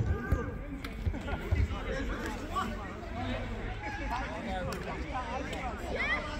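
Men's voices calling and chatting across a five-a-side football pitch, with a few short low thumps in the first two seconds.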